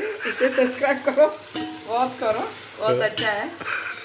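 Food sizzling as it fries in a pan on a kitchen stove, under a woman's laughing voice and chatter.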